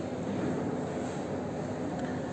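Steady indoor background noise: a continuous rumble with a faint steady hum, with no distinct event.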